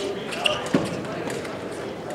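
Fencers' feet landing on the piste during footwork: two sharp thuds about a third of a second apart, over background voices in a large hall.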